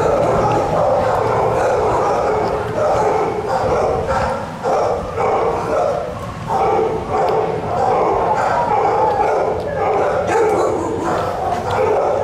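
Dogs barking and yelping almost without pause, a loud overlapping chorus that rises and falls about once a second.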